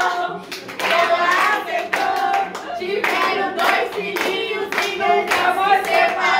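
A small group of people singing a birthday song together while clapping along in time.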